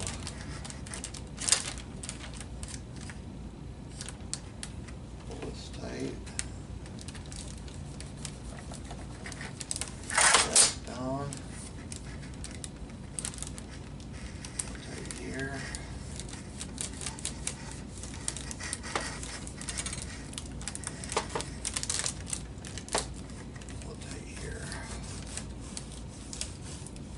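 Transparent plastic covering film on a model airplane wing crinkling and crackling in scattered light clicks as the wing is handled and the film is ironed down, with a louder burst of crackling about ten seconds in.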